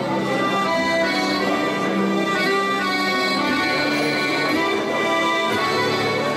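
Accordion playing the opening of a gentle waltz, held notes and chords that change about every half second.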